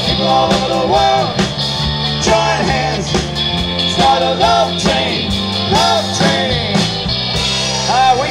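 Live rock band playing an upbeat groove: electric guitar, bass guitar and drum kit, with short melodic phrases that swoop up and down over a steady bass line.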